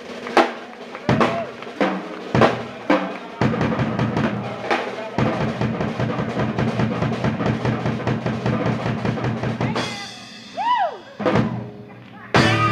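Live Latin jazz band with the drum kit and congas to the fore. Loud accented ensemble hits in the first few seconds give way to a fast, dense drum passage. Near the end the drums drop out and a few notes bend up and fall away.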